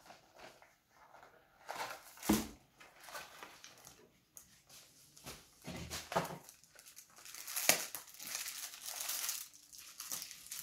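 A boxed chocolate assortment being cut open with a knife and unpacked: intermittent crinkling and rustling of wrapping and cardboard, with a sharp crackle about two seconds in and a longer stretch of rustling near the end as the tray comes out.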